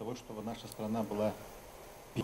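A man singing unaccompanied into a handheld microphone, a few held notes, the voice dying away in the second half.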